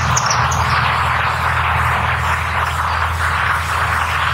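Steady outdoor ambience: a loud, even hiss with a low steady hum beneath it, and a few short high bird chirps in the first half second.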